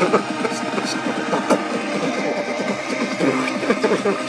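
Vocal beatboxing: continuous buzzing mouth and throat sounds, broken by quick clicks.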